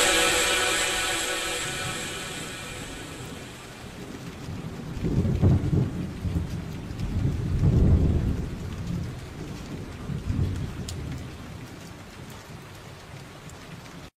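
The last of the music fades out. Then steady rain, with rolls of thunder about five and eight seconds in and a weaker one near ten seconds.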